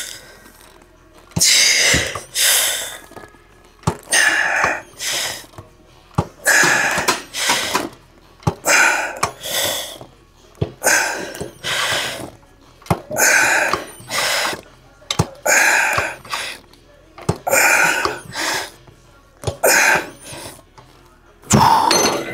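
A man breathing hard and loudly through a set of seated hamstring curls: a forceful breath out and in roughly every two seconds, in time with the reps.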